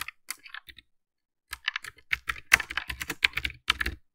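Typing on a computer keyboard: a few scattered keystrokes, a pause of about a second, then a quick, dense run of keystrokes.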